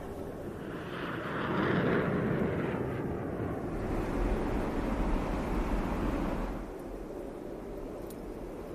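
Fly-by sound effect of an animated fleet of flying ships: a rumbling whoosh of air that swells about a second in and drops away near the end.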